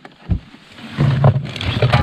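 Water glugging out of a plastic bottle as it is poured into a camp stove's cooking pot, starting about a second in, after a light knock.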